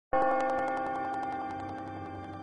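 A single held musical note, the opening of a film score, starts abruptly and slowly fades, with a fast regular flutter running through it.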